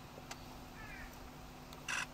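A single camera shutter click near the end, over quiet outdoor background, with a few faint high chirps from a small bird about a second in.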